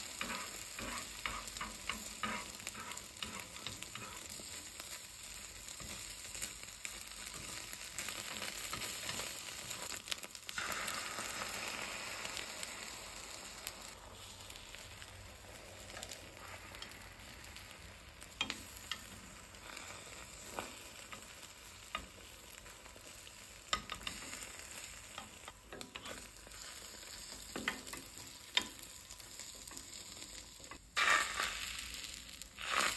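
Beaten egg sizzling in a rectangular tamagoyaki pan as it is stirred and rolled into an omelette, the sizzle loudest in the first half. Occasional light taps of the utensils against the pan.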